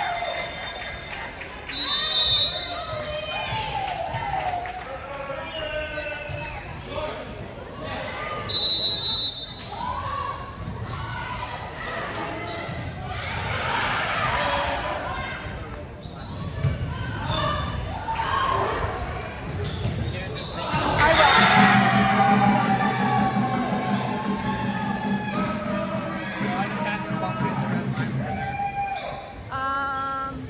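Gymnasium volleyball match: a referee's whistle blows two short blasts, about two seconds in and again near nine seconds, over players and spectators shouting and cheering in the echoing hall, with the ball's hits and bounces on the hardwood. A low steady drone sounds for several seconds in the second half.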